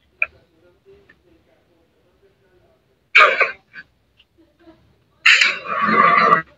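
Mostly near silence on a video call, broken by a short vocal sound about three seconds in and a longer voice sound starting about five seconds in.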